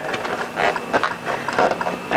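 Fingers handling a car floor mat, giving irregular scratchy rustles and small taps on its coil-textured top layer and rubber edge.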